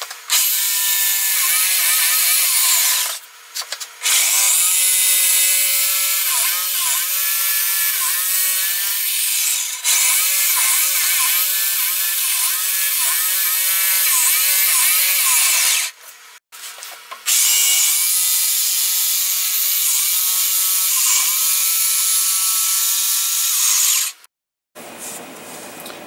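Jigsaw cutting through MDF sheet, running in three long stretches with brief stops about 3 s and 16 s in, and stopping about 24 s in. The motor's pitch dips and rises as the blade works.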